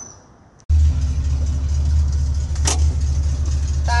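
Steady low rumble of a 1966 Ford Mustang's engine running, heard from inside the car's cabin, cutting in suddenly about two-thirds of a second in. One sharp click comes near the middle.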